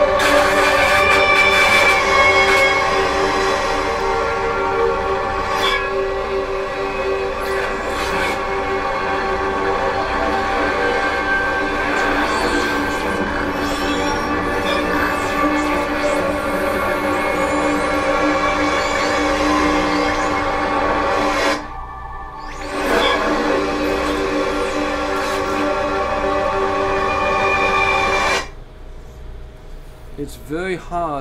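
A stereo electroacoustic composition playing back: a loud, dense drone of many steady, layered tones with scattered clicks. It drops out for about a second and a half about two-thirds of the way through, comes back, then cuts off abruptly near the end, leaving only a faint quiet passage.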